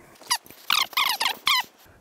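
About four short, high-pitched squeaks in quick succession, several of them gliding in pitch.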